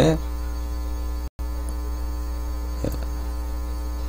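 Steady low electrical hum on the recording's audio line, with a brief cut to silence about a second in.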